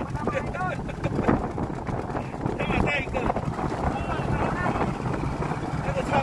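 Intermittent voice over a steady low rumble of wind and water against a small boat, with short knocks and rustles as wet crab netting is hauled aboard by hand.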